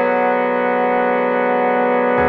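MIDI-synthesized playback of a male four-part chorus arrangement, emphasizing the baritone line: a new chord sounds right at the start and is held steady.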